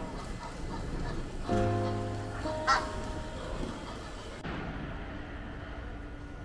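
Egyptian goose giving a short honk about two and a half seconds in, over background music.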